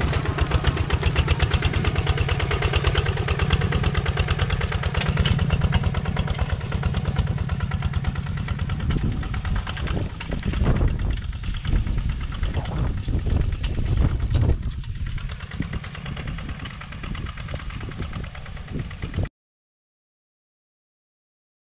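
Two-wheel walking tractor's engine running steadily with a fast, even chug as it works the field. It is loudest in the first half, grows fainter and more uneven later on, and cuts off suddenly near the end.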